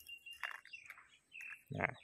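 Faint bird chirps in the background: a thin high note held briefly at the start, then a few short chirps. A man's voice begins near the end.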